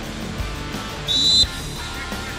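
A referee's whistle blown once, a short, sharp blast about a second in, over faint distant shouting from the field.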